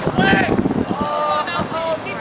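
Several high-pitched voices shouting overlapping calls during a soccer game.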